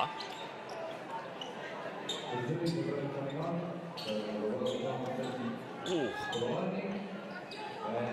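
Basketball arena ambience: a steady murmur of voices in the hall, with scattered short sharp squeaks and knocks from play on the court.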